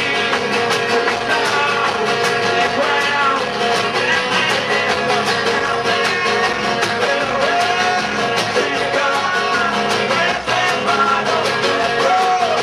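Live acoustic band playing a fast, driving song: strummed banjo and guitar over upright bass, with a man singing loudly into the microphone.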